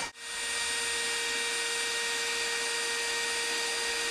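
Cordless drill (Milwaukee M18 Fuel) running steadily at one constant speed while boring into a steel truck bumper, a continuous motor hum with a fixed whine; it starts after a short break just at the beginning.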